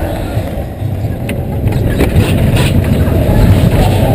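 Matterhorn Bobsleds roller-coaster car running along its tubular steel track: a loud, steady rumble of the wheels, with a few sharp clacks in the middle.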